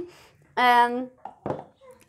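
A single short voice sound, one held pitched note of about half a second, followed by a sharp click about a second and a half in.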